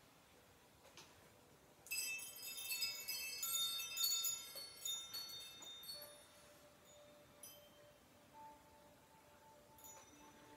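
Chimes tinkling: a cluster of many high ringing notes starts about two seconds in and slowly dies away, followed by a few scattered, lower single notes.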